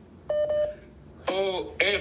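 A short electronic double beep on a phone line as a caller comes on, followed about a second later by a man's voice speaking.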